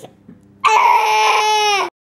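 A young boy crying: one loud, drawn-out wail starting just over half a second in, lasting over a second and cutting off suddenly. He is crying after burning his mouth on hot food.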